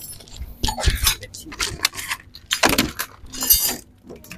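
Plastic wrapping crinkling and metal parts clinking as a new aluminium CVT pulley set is unwrapped from its box: irregular crackles and clicks, densest about three seconds in and near the end.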